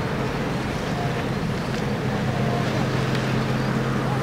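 Steady low hum like a distant motor, under an even wash of wind noise on the microphone.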